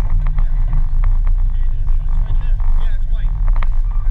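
Steady low rumble of wind and road noise on a camera riding on a slow-moving vehicle across asphalt, with a few light clicks and rattles.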